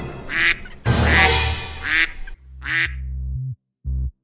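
A duck quacking, about four short quacks in the first three seconds over music, followed by sustained synth notes.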